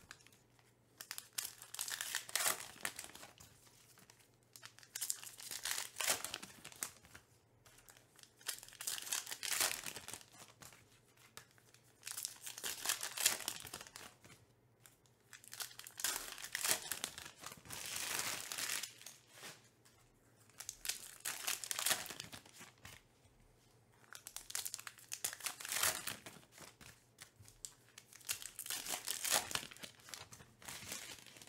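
Trading-card pack wrappers being torn open and crinkled by hand, in repeated bouts every few seconds as one pack after another is opened.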